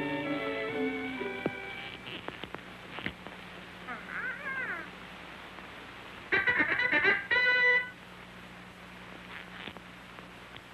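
Orchestral cartoon music winds down, and after a quiet stretch a child's toy trumpet is blown loudly in two short, buzzy blasts about six and seven seconds in.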